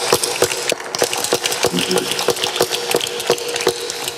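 Applause from the audience and panel: many hands clapping in a dense, irregular patter.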